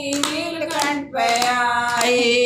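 Group of women singing a devotional bhajan while clapping their hands in time. The held notes break off briefly about a second in.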